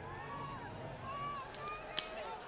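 Faint speech of a man talking in a post-game television interview, heard quietly over a low background of arena noise.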